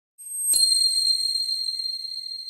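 A bright, high-pitched chime sound effect struck about half a second in, ringing on and slowly fading.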